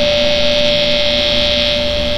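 Electric guitar pickup on an Ibanez JEM buzzing through the amp as a hand hovers close to it without touching: a steady, loud hum-buzz with a high tone over hiss. The player takes it for radio waves coming from his own body.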